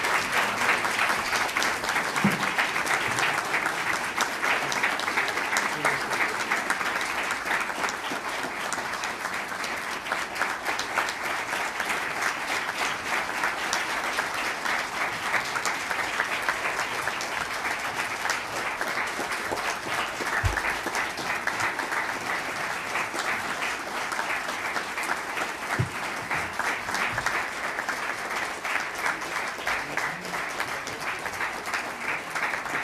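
A large audience applauding in a long, sustained ovation, the clapping easing slightly about ten seconds in and then continuing.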